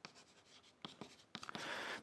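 Chalk writing on a blackboard: a few faint taps and short scratches as a number and a word are written.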